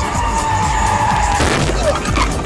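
Car tyres squealing in a hard skid: one long high squeal that slides slightly lower, then a sudden harsh burst of noise about a second and a half in and a short falling squeal near the end.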